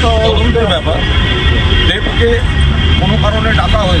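A man speaking in Bengali into reporters' microphones over a steady low rumble of road traffic.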